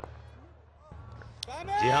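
A single sharp crack of a cricket bat hitting the ball, then a low steady hum of stadium background. A commentator's voice comes in near the end with one long drawn-out call.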